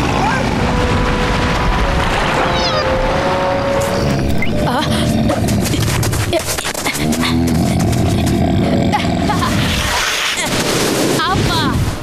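Cartoon soundtrack: the rushing, crashing water of a giant wave under music for the first few seconds, then music and sound effects with brief vocal sounds.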